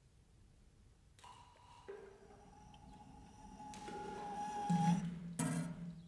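Free-improvised music for laptop electronics and snare drum. Held tones enter one after another about a second in and swell. A low tone joins near the end with a short noisy crash, then the sound breaks off.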